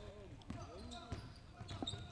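Faint sounds of live basketball play in a gym: a basketball bouncing on the hardwood court a few times, about every half second, with faint distant voices of players.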